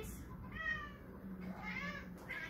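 Domestic cat meowing twice, about a second apart, the second call rising in pitch.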